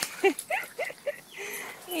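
An excited dog giving several short, high whines or yips in quick succession in the first second, with a person laughing near the end.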